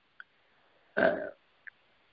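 One short vocal sound from a man, about a third of a second long, like a brief grunt or throat sound, heard about a second in over a narrow-band telephone line. Two faint tiny blips come just before and after it.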